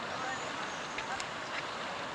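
Steady outdoor background noise with distant, indistinct voices and a few faint splashes from a swimmer doing front crawl.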